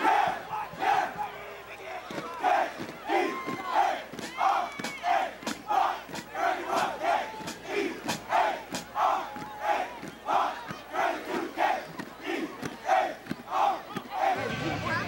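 A football team shouting a chant together in unison: many male voices in short, loud shouts repeated in a quick, rhythmic series.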